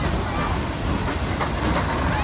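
Steam locomotives D51 200 and C56 160, coupled as a double-header, rolling past: a steady low rumble with a few wheel clicks and a light hiss of steam.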